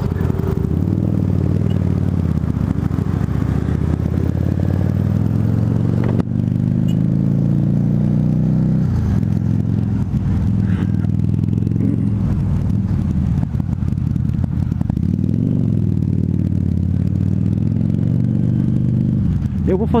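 Harley-Davidson V-Rod Muscle's liquid-cooled V-twin with Vance & Hines Competition Series slip-on exhausts, pulling away and riding through city traffic, its note rising and falling in pitch several times as the rider accelerates, shifts and rolls off. Heard through a microphone inside the rider's helmet.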